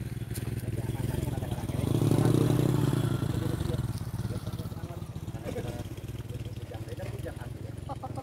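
A motor vehicle engine running, swelling to its loudest about two to three seconds in and then fading back down.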